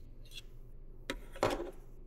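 Handling noise from wireless earbuds and their plastic charging case: faint rubbing with a small click about a third of a second in and a sharper click about a second in.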